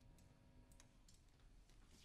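Near silence: the last held notes of a jazz ensemble fade out within the first second, with a few faint scattered clicks.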